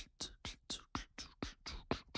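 Soft, breathy ASMR-style beatboxing: mouth clicks and whispered hissing strokes in a steady rhythm of about four a second.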